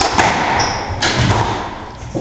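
Squash rally: the ball struck and hitting the court walls, two sharp hits under a second apart, with court shoes squeaking briefly on the hardwood floor between them.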